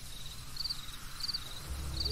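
Crickets chirping faintly in short pulsed trills, repeating every half second or so, over a faint steady high-pitched hum.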